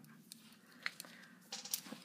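Faint metallic clicks from a Benchmade 62T balisong trainer being handled, its steel handles and latch knocking together: a sharp click about a second in, then a quick cluster of clicks near the end as it is fumbled and nearly dropped.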